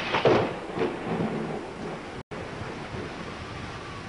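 A thunderclap crashes and rumbles through roughly the first second and a half, then gives way to a steady hiss of rain. The audio drops out for an instant a little after two seconds.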